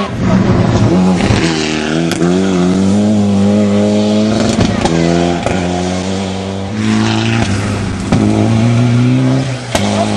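Rally car engines running hard on a gravel special stage, revving up and dropping back through gear changes as the cars drive away, with a few sharp cracks near the end.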